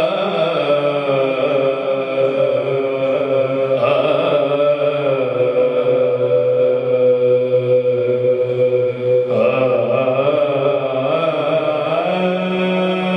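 A man's solo voice singing an Urdu naat unaccompanied into a microphone, in long held, wavering melodic phrases; a new phrase begins about four seconds in and again about nine seconds in.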